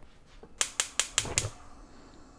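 Gas range igniter clicking: five quick, sharp clicks at about five a second, then stopping as the burner lights.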